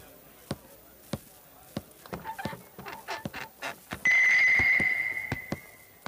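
Footsteps of sandals on a wooden floor, one step about every half second. About four seconds in, a sudden loud high ringing tone sounds and fades away over the next two seconds.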